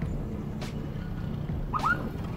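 Motor scooter riding in city traffic: steady engine and road rumble. Near the end there is a brief pair of rising chirps, the loudest sound.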